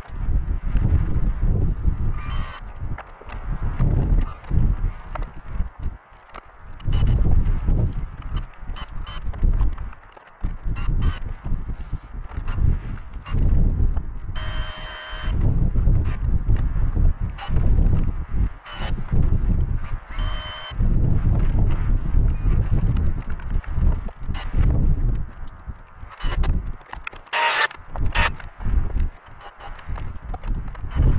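Wind buffeting the microphone in uneven gusts, with scattered knocks and clicks from hand work at a wooden bench. About halfway through comes a short whirring burst of about a second, and a shorter one a few seconds later.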